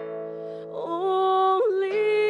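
A woman singing a slow song in long held notes; her voice steps up to a higher, louder note about a second in.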